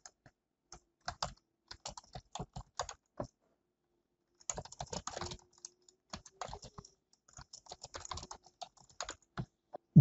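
Typing on a computer keyboard: quick, irregular keystroke clicks in bursts, with a pause of about a second near the middle.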